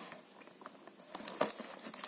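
Scissors snipping through a plastic courier mailer bag, with the plastic crinkling. The first second is faint, then a few short, sharp snips come in the second half.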